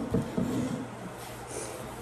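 Quiet room tone with a low steady hum and faint handling rustle as the plastic electronic caller's speaker and remote are moved about.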